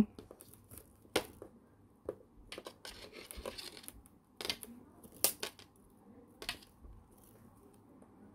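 Fine jewellery wire being wound by hand around a twisted wire frame: scattered small clicks and ticks of the wire, with a short scraping rustle about three seconds in.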